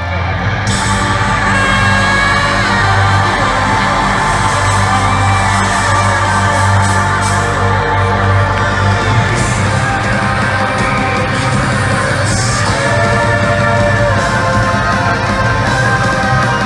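Heavy metal band playing live in an arena, heard from among the audience: melodic saxophone-like lead lines over distorted guitars, bass and drums, with fans yelling and whooping.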